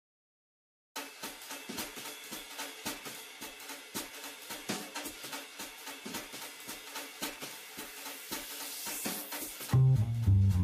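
About a second of silence, then a drum kit plays a busy pattern on cymbals and hi-hat, growing brighter toward the end. Near the end a double bass comes in with loud, low notes.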